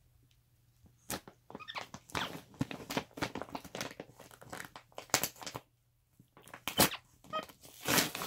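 Plastic gift bag crinkling and rustling in irregular bursts as a capuchin monkey rummages inside it. It starts about a second in and breaks off briefly about six seconds in.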